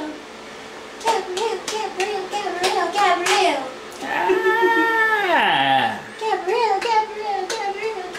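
An adult clapping in quick, regular claps while crooning a wordless sing-song tune to a baby. About halfway through, the voice slides down in one long falling glide, and the baby laughs over it.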